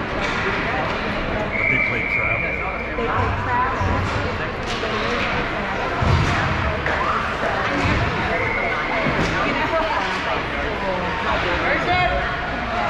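Echoing ice-rink din of indistinct voices from spectators and players during youth hockey play, with a few scattered sharp clacks of sticks and puck. A short, steady high tone sounds about two seconds in and again near eight seconds.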